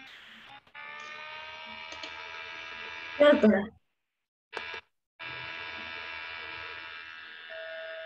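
A steady buzzing tone with many overtones that cuts out abruptly before the middle, returns briefly, then holds steady again. A short burst of a voice breaks in about three seconds in.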